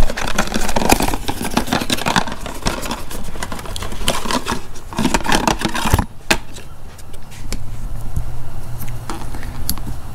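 Packaging being torn open and handled as a new oxygen sensor is unboxed: crinkling and rustling with small clicks and clinks, busiest for the first six seconds and then sparser.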